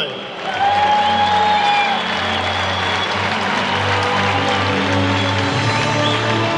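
A stadium crowd applauding while music plays, the music holding long sustained notes over the clapping.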